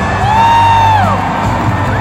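Live rock concert sound recorded from the audience: the band playing loudly while the crowd cheers, with one high note rising, holding for about a second and falling away.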